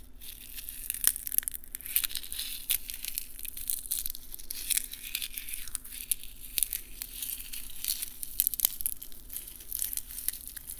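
A dried, silver-painted carnation being crushed in the hand and its brittle petals torn apart: dense, crisp crackling and crinkling with sharp snaps scattered throughout.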